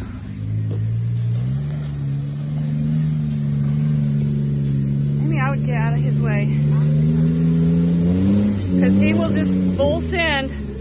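Jeep Wrangler engine pulling steadily under load as it crawls up a rocky trail. The revs rise about a second and a half in and climb again near the end.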